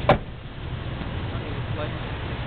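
Steady low rumble of distant road traffic, with one brief sharp sound just after the start.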